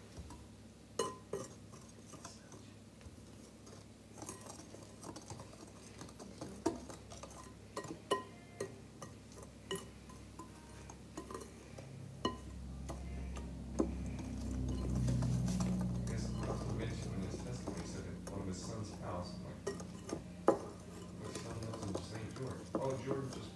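Hand whisk mixing crepe batter in a glass bowl, the wire clinking against the glass in scattered ticks. About halfway through, a low hum swells up beneath it and holds.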